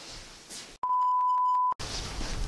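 An electronic beep: one steady, pure tone held for about a second, starting and stopping abruptly, after a moment of faint room tone.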